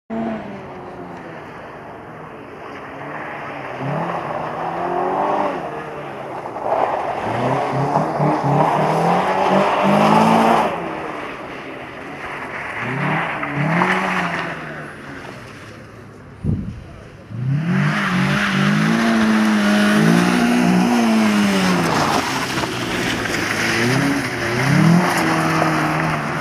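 Renault Clio rally car's engine revving hard and dropping back again and again, the pitch climbing with each burst of throttle and falling as the driver lifts off. About two-thirds through there is a short lull with a single knock, then the engine comes back louder.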